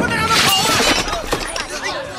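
A short crash of something breaking about half a second in, amid the shouting voices of a scuffle.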